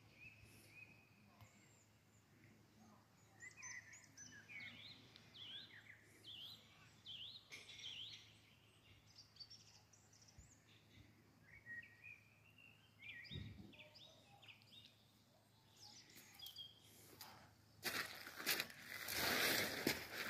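Small birds singing faintly, a scatter of short, high chirps. A louder rushing noise comes in near the end.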